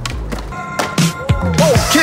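Skateboard ollie: the tail pops and the wheels land on concrete with sharp clacks about a second in, over background music.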